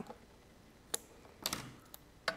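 Scissors snipping double-sided tape against a clear acetate box: a sharp snip about a second in, then a second click with a brief rustle of the plastic half a second later.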